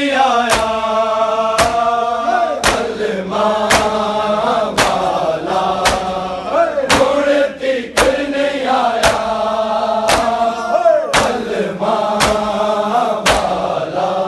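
A group of men chanting a Muharram nauha (lament) in unison, with sharp in-time slaps of open hands on bare chests (matam) about once a second.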